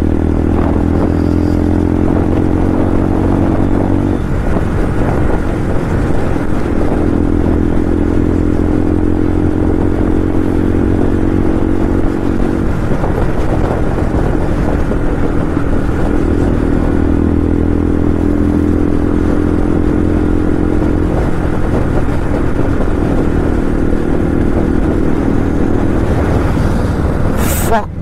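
Bajaj Pulsar 125's single-cylinder engine running at a steady cruising speed, heard from the rider's seat with wind and road rush around it. The engine note holds even, with a few brief dips where the throttle eases.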